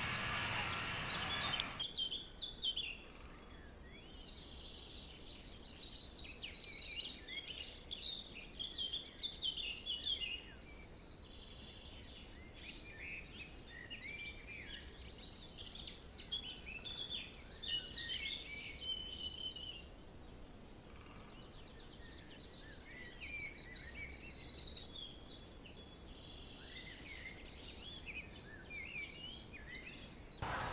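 Small birds chirping and singing in flurries of short high calls and trills, fairly faint, starting after an abrupt change in the sound about two seconds in.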